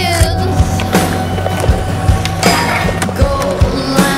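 Skateboard wheels rolling on concrete, heard together with a rock music soundtrack that has a steady beat.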